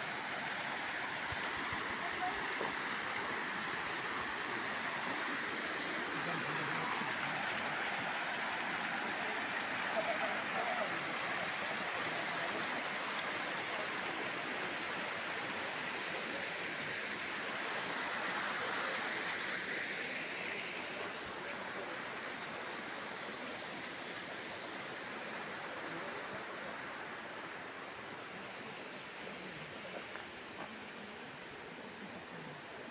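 Water running down a waterfall of many thin streams over moss-covered rock terraces: a steady rush that eases slightly about two-thirds of the way through.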